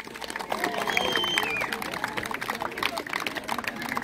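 Crowd clapping, a dense, even patter of many hands, with children's voices and calls over it.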